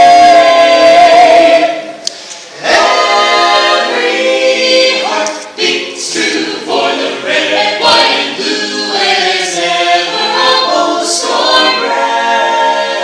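A cappella vocal ensemble of mixed women's and men's voices singing in close harmony. A loud held chord ends about two seconds in, and after a short breath the group comes back in with a moving, more rhythmic line.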